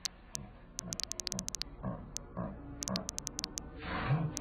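Rapid typing clicks as a sound effect, a few a second, over a low, repeated animal-like sound that comes about twice a second and grows louder.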